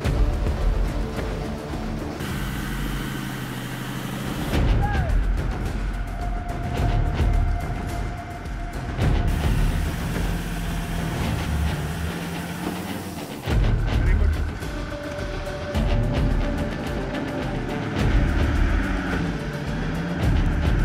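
Off-road 4x4 engines revving and labouring through deep mud, the pitch rising and falling, in several short clips cut together over background music.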